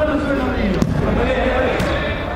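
A football kicked once on artificial turf, a single sharp knock a little under a second in, among men's voices calling out across the pitch.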